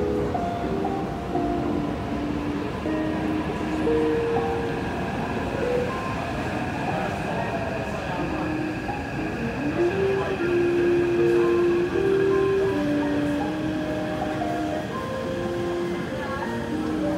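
Metro train arriving at an underground platform, a steady rumble with a high whine building through the middle, while the platform's train-approach chime plays a simple melody of held notes.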